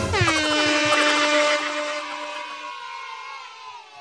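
Electronic sound effect played over a livestream: a bright, many-toned chord that swoops down in pitch at the start, then holds and slowly fades away over about three seconds.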